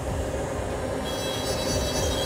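Dental lab micromotor handpiece running a bur against a PMMA prototype denture, with a steady grinding whine; a higher-pitched whine joins about a second in.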